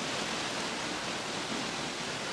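A steady, even hiss with nothing else heard over it.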